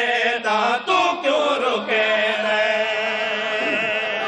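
Men's voices chanting a devotional qasida through microphones and a PA. From about halfway through, the line is drawn out into one long held note.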